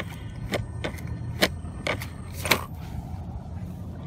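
A few sharp plastic clicks and knocks as a 1/8-scale RC buggy is handled and set down on dirt, over a steady low background rumble.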